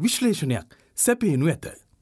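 Speech only: a narrator reading an audiobook aloud in Sinhala, two short phrases with brief pauses.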